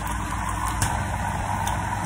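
Steady low mechanical hum, like a motor or engine running, with a few faint clicks.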